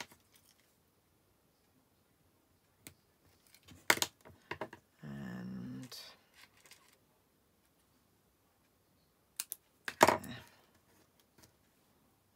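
Small craft scissors snipping thin paper strips, heard as a few sharp snips and clicks, one cluster about four seconds in and the loudest about ten seconds in. A brief low hum lasting about a second comes between them.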